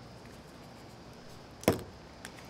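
A single sharp knock about one and a half seconds in: a seasoning shaker bottle set down on a wooden cutting board, over faint room tone.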